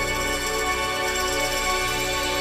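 Live pop band playing a slow instrumental passage of sustained, held chords, with no singing.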